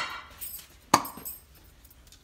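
A glass baking dish knocking against a granite countertop as it is set down: one sharp clink about a second in.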